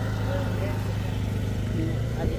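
Motor scooter engine idling with a steady low hum.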